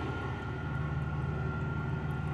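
Portable generator engine running steadily: an even low hum with a thin, faint high whine above it.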